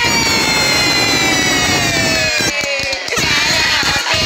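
A long, high-pitched tone sliding slowly and steadily downward in pitch for about three seconds over a rough rushing noise, then giving way to a jumble of voices and music near the end.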